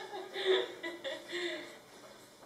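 A woman laughing in two short bursts, heard through a television speaker.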